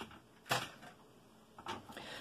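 Handling noise of things being moved on a tabletop: a sharp brief knock-and-rustle about half a second in and a fainter one near the end, against a quiet room.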